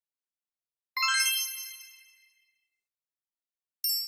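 A bright, bell-like chime sound effect for a logo intro. It dings once about a second in and rings out, fading over about a second and a half, and a second ding starts near the end.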